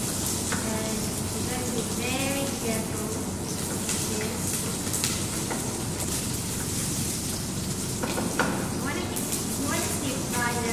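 Shallots frying in hot oil in a stainless steel pan: a steady sizzle as they are stirred with a wooden spatula. A single sharp tap about eight seconds in.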